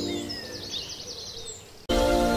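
Birds chirping in quick, high zigzag trills as background music fades out. The music starts again abruptly near the end.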